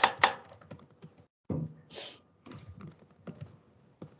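Typing on a laptop keyboard, picked up through a video-call microphone: a run of quick, irregular key clicks, with a brief dropout to silence a little past a second in.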